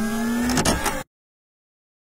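A short engine-rev sound effect for an animated logo, rising slightly in pitch and cutting off sharply about a second in.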